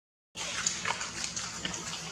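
A moment of silence, then long-tailed macaques making short, noisy grunts and clicks close by.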